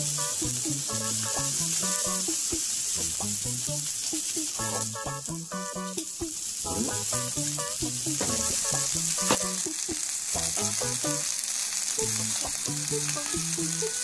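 Pork patty and fried egg sizzling steadily on an electric hot plate, with a background melody of sustained notes playing over it.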